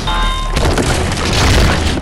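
A loud, deep rumbling boom with noisy crashing over it, held throughout and cutting off abruptly at the end.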